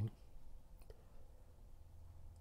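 Faint room tone in a pause between spoken phrases: a steady low hum, with a couple of small clicks just under a second in.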